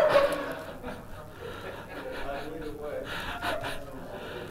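Faint, indistinct voices and soft chuckling just after a joke, with a breath at the very start.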